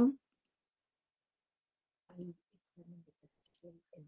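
A spoken word trails off at the very start, then near silence. From about two seconds in, a faint voice comes through in short, broken pieces over a video call, with a few faint clicks.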